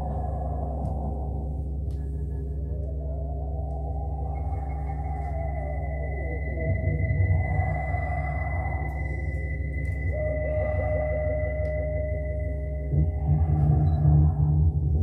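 Live experimental electronic drone music from synthesizers and electronics: layered low drones under a high held tone that enters about four seconds in, with curving pitch sweeps through the middle. A pulsing mid-pitched tone comes in about ten seconds in, and the low end swells louder near the end.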